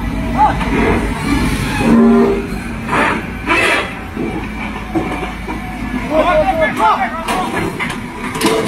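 Low diesel engine rumble as a wheel loader shoves a heavily loaded semi-truck from behind with its bucket; the rumble fades out about three-quarters of the way through.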